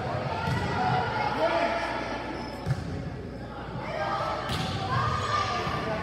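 Volleyball rally in a gym: the ball struck by players' hands and forearms, with one sharp hit about two and a half seconds in, under voices calling through the play. The sound echoes in the large hall.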